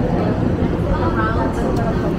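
Busy street ambience: passersby talking over a steady low rumble of traffic.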